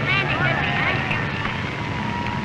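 Large crowd shouting and cheering, many voices overlapping, over a low steady engine drone, on an old newsreel soundtrack. A thin steady whistle-like tone comes in near the end.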